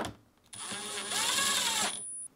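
Milwaukee cordless driver running a screw into the refrigerator's plastic middle cover. The motor whine starts about half a second in, lasts about a second and a half, and rises and then falls in pitch as the screw is driven home.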